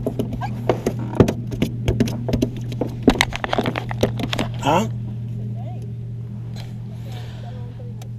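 Rapid knocks and clatter of handling in a small fishing boat for about the first five seconds, over a steady low hum, then only the hum.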